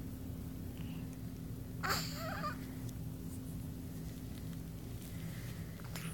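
A newborn baby's brief, squeaky vocalization about two seconds in, lasting about half a second, wavering in pitch, over a steady low hum.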